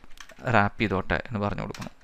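Computer keyboard typing in short runs of keystrokes, under a man speaking, whose voice is the loudest sound.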